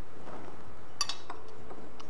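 Metal teaspoon stirring tea and clinking against 1940s Homer Laughlin china, with one sharp, ringing clink about a second in and a few light ticks after it.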